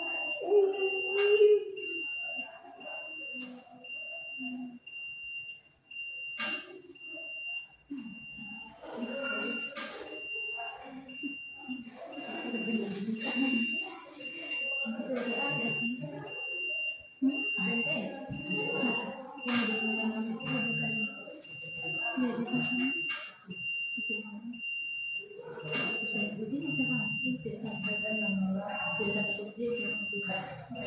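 A steady high-pitched electronic tone, like a device alarm or buzzer, sounds continuously under voices; the loudest voice sound comes about a second in.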